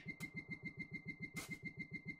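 A small engine running with a steady rapid throb, about ten pulses a second, with a faint whine riding on it and a brief hiss about a second and a half in.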